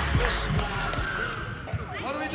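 Basketballs bouncing on a hardwood gym floor amid children's voices, as background music fades out in the first half second.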